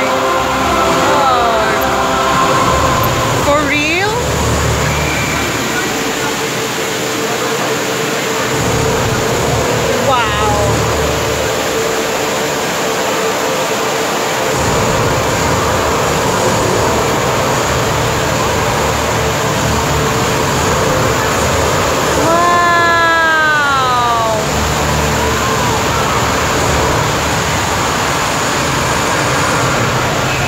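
Steady rush of a fountain's water curtain cascading around its base, with crowd chatter over it. A long falling sound stands out about three-quarters of the way through.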